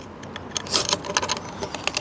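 Small, irregular metallic clicks and rattles as a locking tool is worked into a string trimmer head to hold it for unscrewing, with a brief cluster of clicks a little under a second in.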